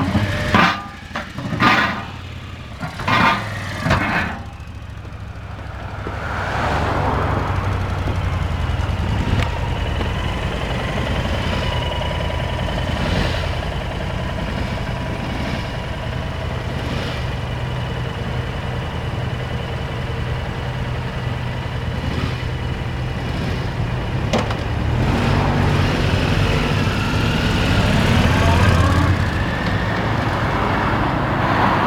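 Cruiser motorcycle V-twin engines (a Honda VT1300CX and a Yamaha DragStar): a few short, sharp throttle blips in the first four seconds, then steady idling and low-speed running that gets louder over the last few seconds.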